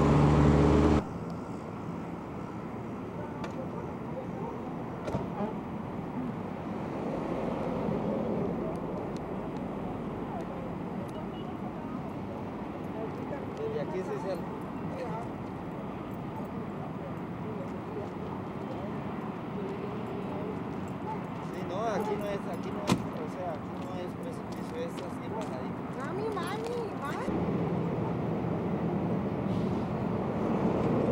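Outdoor background noise through a camcorder's built-in microphone: a steady hiss with faint, distant voices coming and going. A louder humming sound cuts off suddenly about a second in, and there is a single sharp click later on.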